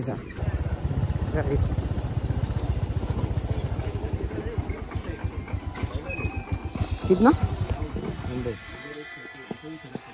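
Wind rumbling on the microphone of a scooter rider, with the scooter running along a rough dirt track. It dies away as the scooter slows and stops about eight and a half seconds in.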